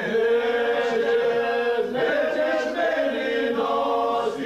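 A group of men singing together unaccompanied, holding long drawn-out notes that shift in pitch about two seconds in and again near the end.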